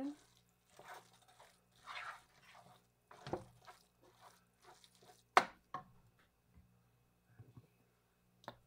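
Wooden spoon stirring and scraping cooked rice in a nonstick skillet: a string of short scraping strokes about a second apart, with one sharp knock about five seconds in.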